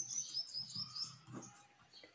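Faint, wavering high-pitched chirping through the first second or so, with soft ballpoint pen strokes on paper.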